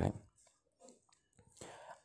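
The last syllable of a narrator's word, then a near-silent pause with faint mouth sounds and a soft in-breath near the end.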